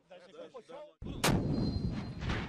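Faint men's voices, then about a second in a loud artillery blast, followed by rumbling echo.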